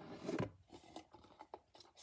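Cardboard sleeve of a trading-card premium box sliding off the inner box: a short, faint scrape of card on card in the first half second, then a few light ticks of handling. It slides off smoothly.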